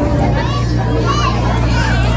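Chatter of voices in a hall, several of them children's high voices, over a steady low hum.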